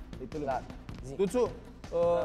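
Brief bits of speech in a pause of the argument, over quiet background music.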